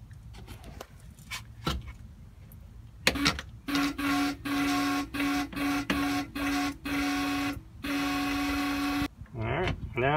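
Compressed air blown through an RV's water lines in about eight short bursts, starting about three seconds in: each burst is a hiss with a steady buzzing tone as air and the last of the water are pushed out of the open low-point drain lines to clear the plumbing for winterizing.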